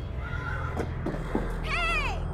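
An animal's short, high-pitched, wavering cry near the end, falling in pitch as it ends, over a low steady hum.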